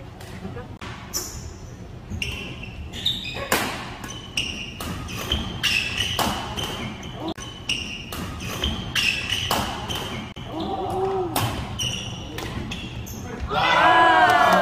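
Badminton rally: rackets striking the shuttlecock in a run of sharp cracks, often less than a second apart, with short high squeaks of shoes on the wooden court floor. A voice comes in near the end.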